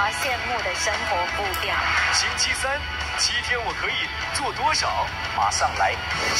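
Television programme audio: music with a warbling vocal melody over a light, regular high-pitched beat.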